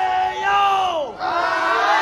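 Several young voices chanting together in two long held phrases, the first sliding down in pitch about a second in, the second swelling up near the end. No drumming.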